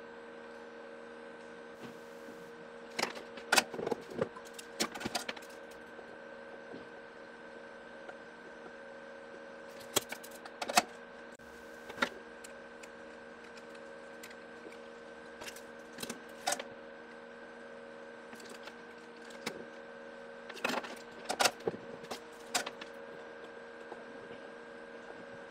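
Scattered clicks and light knocks from a circuit board, small parts and a soldering iron being handled on a wooden desk during soldering, in a few short clusters. A steady electrical hum runs underneath.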